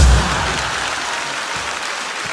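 A last low piano chord struck hard at the very start, then an audience applauding steadily.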